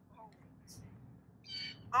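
Quiet outdoor ambience with a couple of brief, faint bird calls and a short soft rustle, then a woman's voice begins reading near the end.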